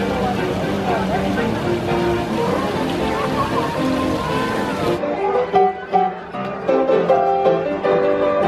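Music with crowd chatter under it, then about five seconds in a sudden cut to a white upright piano being played live: clear single notes and chords.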